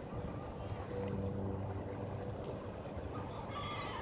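Ring-billed gulls calling briefly near the end, over a low steady hum and rumble.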